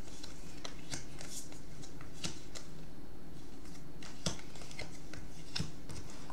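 Tarot cards being handled, drawn from the deck and laid down on a wooden table: a scattering of short, soft clicks and taps, the sharpest about four seconds in.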